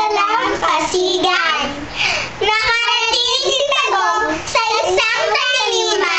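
Young girls singing together in high voices, with a brief break about two seconds in.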